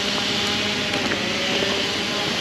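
Steady mechanical drone with an even hiss and a faint hum beneath it, with no change in level.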